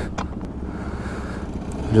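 Gasoline being poured from a plastic jerry can into a dirt bike's fuel tank, with an engine idling steadily underneath and a couple of small clicks from the can at the start.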